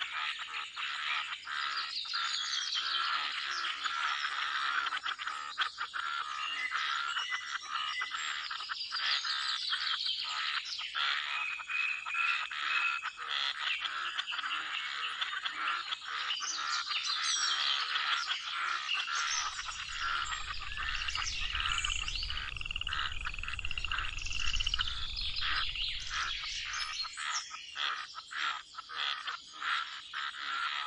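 Pond frogs croaking in a dense, continuous chorus, with birds chirping and singing over it. A low rumble comes in about two-thirds of the way through and lasts several seconds.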